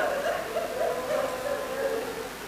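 A man weeping aloud at the microphone, his voice wavering in an unsteady, sinking wail that fades after a long chanted note.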